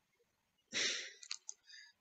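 A man's short breath out, about a second in, followed by a few faint clicks.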